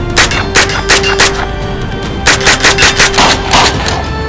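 Century Arms AP5 9mm pistol (MP5 clone) firing: a few shots in the first second and a half, then a quick string of about eight shots from a little past two seconds in, over background music.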